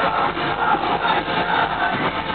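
Rock band playing live with distorted electric guitar and drums, heard as a dense, rough wash of sound through a camera microphone in the crowd.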